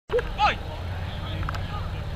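Short loud shouts from rugby players packed in a scrum, over a steady low rumble.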